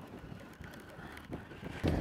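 Low, steady wind noise buffeting the microphone on an open boat at sea, with wave and hull ambience underneath.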